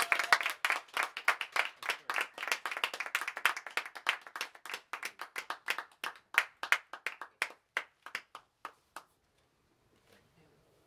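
Small audience applauding by hand at the end of a set: dense clapping that thins out to a few scattered single claps and dies away about nine seconds in.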